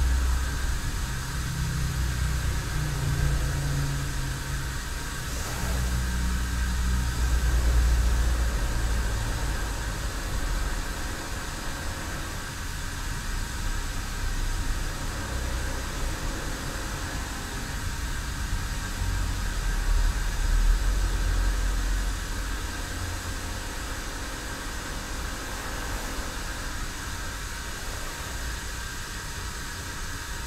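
Cast-iron tea kettle simmering on a sunken charcoal hearth: a steady hiss over a low rumble that swells and fades, the 'wind in the pines' sound of water kept near the boil for tea.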